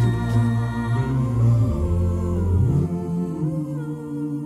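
A cappella backing vocals humming held chords over a deep sung bass line, the chord shifting about three-quarters of the way through.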